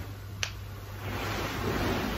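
A single short kiss smack on a sleeping child's head about half a second in, followed by soft rustling noise that swells toward the end.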